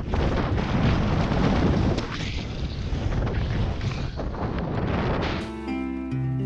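Skis running fast down steep snow, heard through a helmet camera as a loud, uneven rushing noise with wind on the microphone. It cuts off suddenly about five and a half seconds in, and plucked acoustic guitar music starts.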